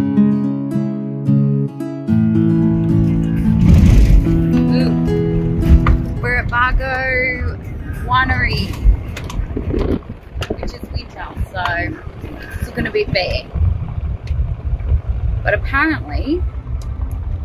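Car driving, heard from inside, with a low, uneven rumble of road and wind noise. Soft plucked-string music plays over the first few seconds and fades out about six seconds in.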